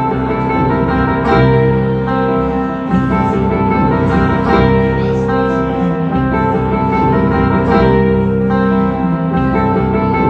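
Solo acoustic guitar strummed in a steady rhythm through a run of changing chords, an instrumental passage with no singing.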